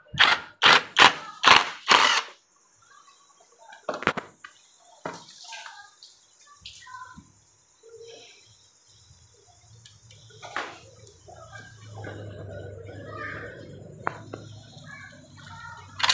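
Cordless power driver run in five short bursts in the first two seconds, backing out 10 mm bolts on an automatic transmission's valve body. Then light clicks and knocks of metal parts being handled, and a low steady hum over the last few seconds.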